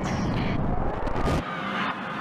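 Roller coaster ride sound effects: a loud rushing roar with a deep rumble that drops away about one and a half seconds in, leaving a hissing rush with riders' screams rising and falling.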